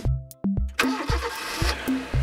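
Cartoon car engine sound effect, a noisy burst starting about a second in and lasting about a second and a half, over children's music with a steady beat.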